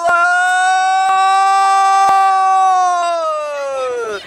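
One person's voice holding a single loud note for about four seconds, steady in pitch, then sinking as the breath runs out near the end.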